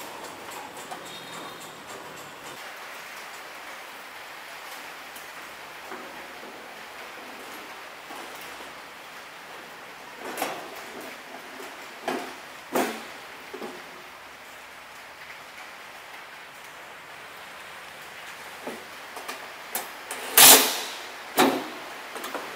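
Stainless-steel sheet-metal cover being fitted onto a machine: a few knocks and clunks about halfway through, then two short, loud bursts of a cordless drill driving in the fastening screws near the end.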